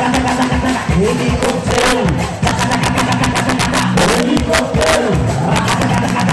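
Live salegy dance music played loud through a PA: a fast, dense drum beat under sustained, sliding vocal and instrumental lines.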